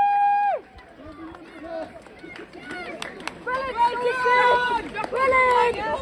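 A voice chanting in long held notes, loud and close: one held note ends about half a second in, and two more follow in the second half. Quieter, short voice sounds fill the gap between them.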